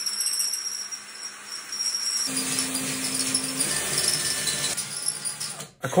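Bosch Lithium-Ion Compact cordless drill running steadily, driving a 3D-printed plastic gear train whose gears rattle and jingle as they turn. The sound shifts about two seconds in and cuts off just before the end.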